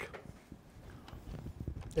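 Faint, irregular clicking of a computer mouse and keyboard, getting busier late on.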